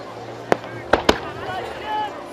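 Aerial fireworks bursting: three sharp bangs, the first about half a second in and the last two close together about a second in.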